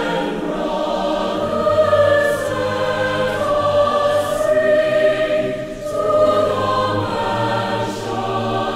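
A choir singing slow, long-held notes as background music.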